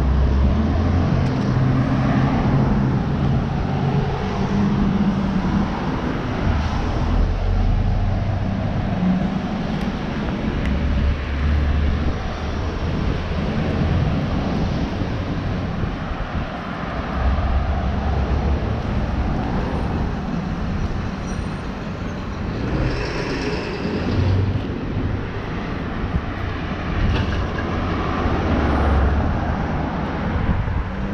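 Road traffic: cars passing one after another on a wide multi-lane street, a steady wash of tyre and engine noise that swells and fades as they go by.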